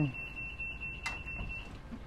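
A steady high-pitched electronic beep, one unbroken note that cuts off shortly before the end, with a single click about a second in.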